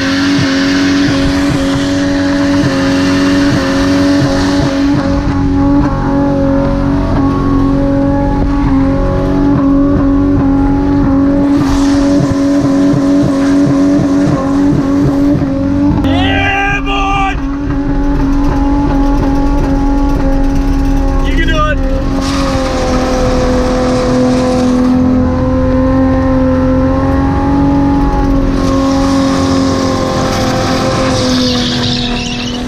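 Manual Ford EL Falcon's SOHC inline-six held at high revs at a nearly steady pitch through a long burnout, the rear tyre spinning and squealing on the bitumen. The note breaks briefly about sixteen seconds in, then settles back.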